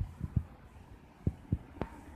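A few soft, low thumps, irregularly spaced, with a sharper click near the end, over a quiet outdoor background.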